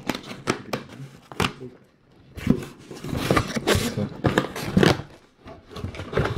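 Cardboard box being opened by hand: sharp clicks and knocks in the first second or so, then scraping and rustling of the cardboard flaps and packaging.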